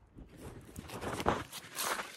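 Footsteps and rustling through dry leaves and grass as the fielder moves to a ground ball, swelling twice in the second half.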